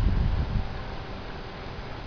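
Wind buffeting the microphone, a low rumble that dies away about half a second in, leaving a faint steady outdoor hiss.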